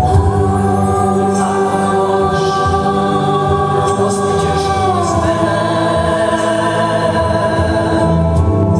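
Live music: several voices singing long held notes together over the band's accompaniment, the harmony stepping down to a lower chord about five seconds in.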